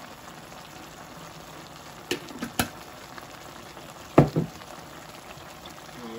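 A pot of chicken and uri (flat bean) curry simmering on a gas hob, with steady bubbling. A few sharp pops come about two seconds in, and a louder knock comes about four seconds in.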